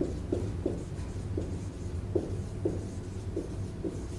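Dry-erase marker squeaking on a whiteboard in a string of short strokes as a phrase is written out, over a steady low room hum.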